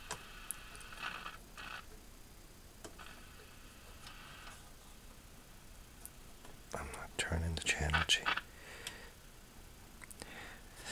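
Faint steady hiss with a few weak tones from the speaker of a 1940s Sentinel 400TV television while the old set is powered up. A brief low murmur of a voice comes about seven seconds in.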